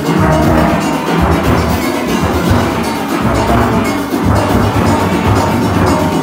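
Steel orchestra playing at full volume, with a set of nine-bass steel pans struck close by carrying deep, repeated bass notes under the higher pans.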